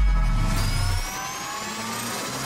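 Animated-logo intro sound effect: a low rumble that dies away after about a second, under a cluster of steadily rising whines that build toward the next hit.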